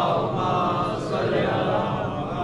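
A gathering of many voices reciting durood (salawat, the blessing on the Prophet Muhammad and his family) together in unison chant.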